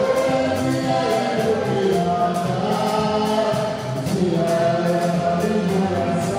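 Gospel worship music with a group of voices singing together, holding long notes that slide from one pitch to the next.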